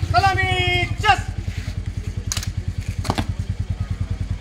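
A motorcycle engine idling with an even, rapid low thumping. Near the start, a voice calls out in long, held notes, and there are two brief clicks in the middle.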